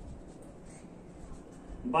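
Marker pen writing on a whiteboard: faint, short scratching strokes as a word is written.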